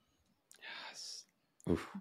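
A short, breathy audible breath from a person, about half a second in, then a spoken "oof" near the end.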